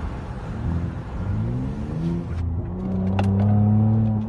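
Muffler-deleted 3.5-liter V6 of a 2013 Ford Explorer, heard from inside the cabin, pulling under throttle from low revs: its exhaust drone rises in pitch, dips once past the middle, then climbs again and is loudest near the end.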